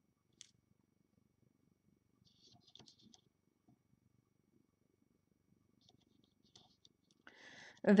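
Quiet handling sounds: a few soft clicks and light crackles as rubber bands are stretched onto plastic loom pegs, over a faint low rumble. A breath is drawn just before speaking resumes at the end.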